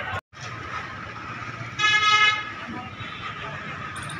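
A vehicle horn gives one steady honk of just over half a second, about two seconds in. It sounds over street background noise and faint voices.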